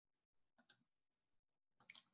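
Faint computer mouse clicks: a quick pair about half a second in and another pair near the end.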